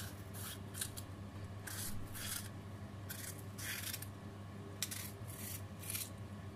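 A kitchen knife slicing a red bell pepper held in the hand: a series of about ten short, crisp cuts, irregularly spaced, over a steady low hum.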